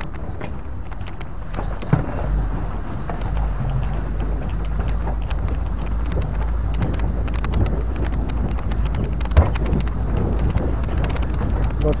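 Off-road ride over a rocky, dry riverbed, heard as a steady low rumble of wind on the microphone and running gear, with scattered clicks and knocks from stones under the wheels. A sharper knock comes about two seconds in and another near the end.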